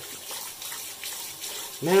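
Cold water running steadily from a bathroom tap into the sink, splashed up onto the face by hand to rinse off after a shave.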